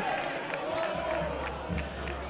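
Football stadium crowd noise reacting to a foul, with a distant shout in the first second. A low steady hum comes in about a second in.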